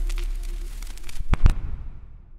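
The closing tail of a dubstep remix: a held note and bass die away under crackling noise, with two sharp cracks about one and a half seconds in as the track fades out.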